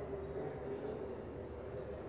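Steady low background hum and rumble of a large indoor hall, with one faint steady tone held throughout.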